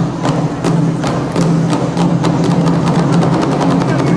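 Nanta drum ensemble playing: drumsticks striking barrel drums in a regular rhythm that gets denser in the second half, over a sustained low drone.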